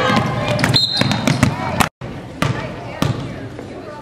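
Gym crowd shouting during play, with a short referee's whistle about a second in. After a brief cut, a basketball bounces on the hardwood floor a couple of times over crowd chatter as the free-throw shooter gets ready.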